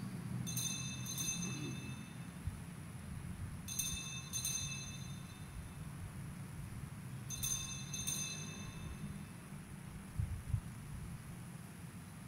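Altar bells rung at the elevation of the consecrated host: three faint ringings about three and a half seconds apart, each a quick double strike that dies away within a second, over a low steady hum.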